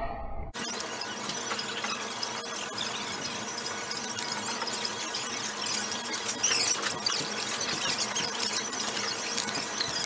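Supermarket ambience: a steady, hissy wash of store noise with faint high steady tones in it. It begins suddenly about half a second in, and a brief louder burst comes around six and a half seconds in.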